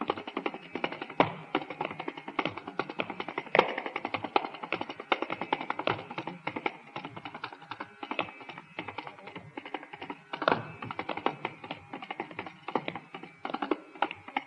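Carnatic percussion solo (thani avartanam) on mridangam and kanjira: a fast, dense stream of hand-drum strokes with occasional louder accents, a few seconds in and again about two-thirds of the way through.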